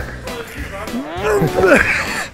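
A man's drawn-out vocal cry, about a second long in the second half, rising and then falling in pitch, over background music.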